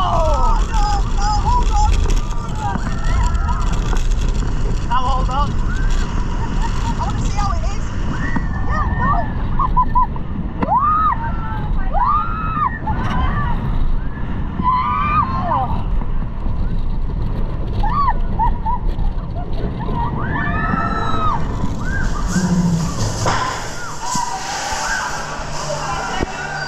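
Onboard a 10-inversion steel roller coaster in motion: wind buffeting the microphone and the train rumbling along the track, with riders screaming and yelling in short bursts throughout.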